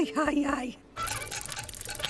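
A cartoon character's short wailing cries of alarm, then, from about a second in, a rapid, even mechanical clicking rattle: a scene-transition sound effect.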